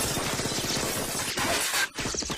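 Rapid handgun fire mixed with glass shattering, in a movie shootout soundtrack. The sound drops out for a moment just before the end.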